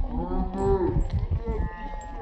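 Several people yelling long drawn-out shouts at once, their voices overlapping and easing off near the end.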